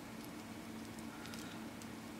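Quiet room tone with a faint steady hum and a few faint light ticks of handling as dubbing wax is rubbed onto a fly-tying thread loop.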